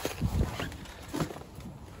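Soft shuffling and handling noises of a person moving into a car's driver seat, with a few low swells in the first half-second and a couple of faint knocks.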